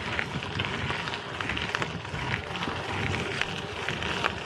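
Bicycle tyres rolling over a packed-gravel trail: a steady crunching hiss with frequent small clicks and rattles from the bike.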